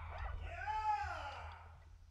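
A single howl-like vocal whoop that rises and then falls in pitch, as the band's last chord fades out, over a steady low amplifier hum.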